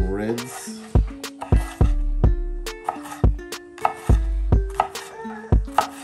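Kitchen knife slicing a red bell pepper into strips on a wooden cutting board: a dozen or so sharp knocks of the blade hitting the board, unevenly spaced at about two a second.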